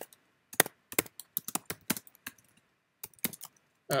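Typing on a computer keyboard: irregular key clicks in two runs, with a short pause between them.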